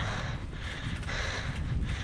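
Steady low wind rumble on an action camera's microphone while riding a mountain bike along a paved road.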